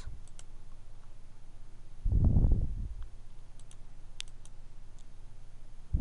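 Computer mouse clicking, scattered single and double clicks, over a steady low electrical hum. About two seconds in comes a short, louder, muffled low sound lasting under a second.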